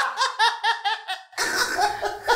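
Hearty laughter, a quick run of 'ha-ha-ha' pulses at about five a second, that cuts off abruptly about a second and a half in.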